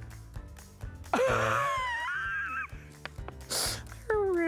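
A woman's long, wavering groan-like vocal sound about a second in, lasting over a second, then a short breathy gasp near the end. A low music bed plays underneath.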